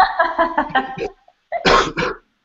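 Men laughing, then a single short cough near the end.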